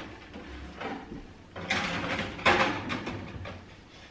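Two metal sheet pans slid onto oven racks and the racks pushed in: a scraping rattle with sharp clicks in two bursts past the middle.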